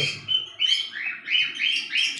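Small birds chirping: a quick series of short, high, rising chirps.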